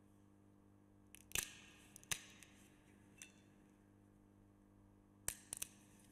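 Quiet church room tone with a faint steady electrical hum, broken by a few sharp clicks and knocks from small objects handled at the altar: two about a second and a half and two seconds in, and a quick pair near the end.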